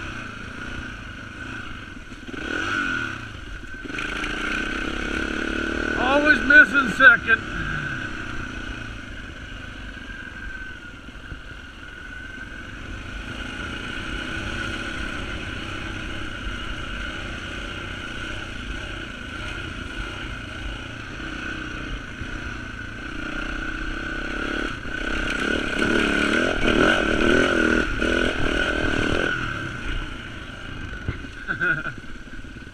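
Dirt bike engine being ridden along a trail, revving up and down with the throttle: a sharp burst of revving about six seconds in, lower revs through the middle, and a longer, louder stretch of hard revving near the end.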